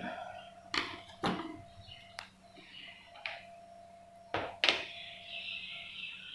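Scattered knocks and taps of lab apparatus being handled on a bench, about six in all, with a faint steady hum that cuts off with a click about two seconds in.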